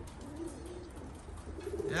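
Domestic racing pigeons cooing softly: several low, rounded coos spread through the moment.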